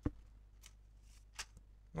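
A quiet pause broken by a few short clicks: a sharp one at the very start, then two fainter ones about two-thirds of a second and about a second and a half in.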